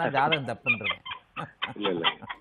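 A man's voice talking, breaking into short, quick chuckles in the second half.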